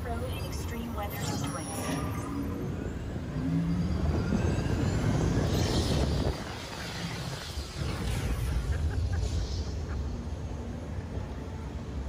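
Test Track ride vehicle running along its track, a steady low rumble that grows louder about four seconds in and drops off suddenly a couple of seconds later.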